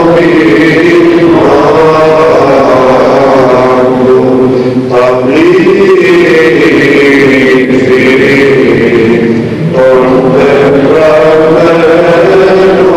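Orthodox chant: voices singing long held notes that slide slowly between pitches, with short breaks about five and ten seconds in.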